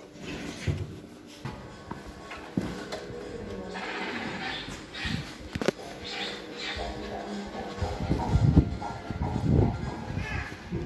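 Bumping and rubbing of a handheld phone being moved about, with heavy low thumps near the end, over background music and muffled voices.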